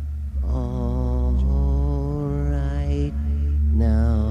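Ambient music: a voice chanting long held notes over a steady low drone, moving to a new note twice.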